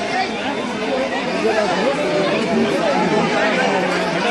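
Many people talking at once: a crowd chattering, with overlapping voices throughout.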